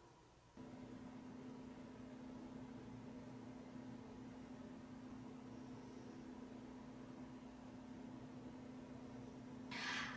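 Near silence: faint room tone with a steady low hum that comes in about half a second in.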